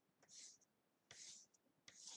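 Faint scratching of a colored pencil stroking across paper in short strokes: two about a second apart and another starting near the end.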